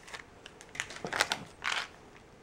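Candy packaging being handled: a plastic wrapper crinkling and rustling, with a few light clicks and taps, mostly in the second half.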